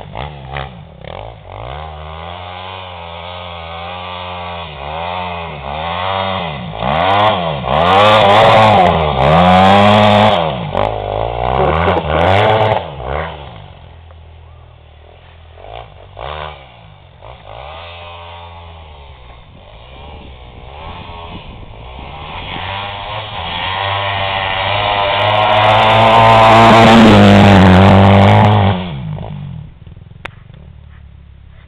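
Yamaha dirt bike engine revving up and backing off over and over, its pitch rising and falling as the rear wheel spins in snow. It is loudest about eight to thirteen seconds in and again near the end, fainter in between while the bike is far across the field, and drops off sharply just before the end.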